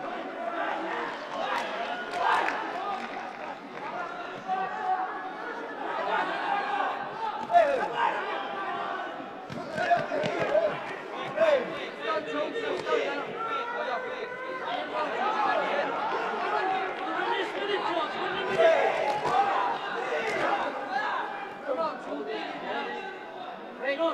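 Overlapping shouts and chatter from a crowd and ringside voices in a large hall during a boxing bout, with a few sudden louder moments.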